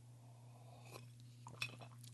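Near silence over a low steady hum, with a few faint clinks in the second half as an empty drink container is handled.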